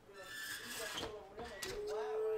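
Old oven door being swung shut, with a couple of knocks about halfway through and a little later, under quiet voices.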